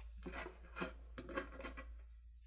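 Faint, scattered light taps and rustles of small wooden chips and rocks being handled on a tabletop.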